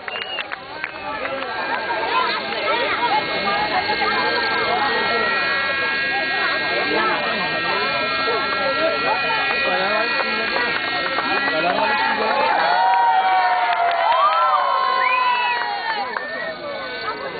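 Spectators talking over the steady high whine of a Thunder Tiger Raptor 30 nitro RC helicopter in flight, its engine and rotors holding one pitch, growing somewhat louder after about twelve seconds.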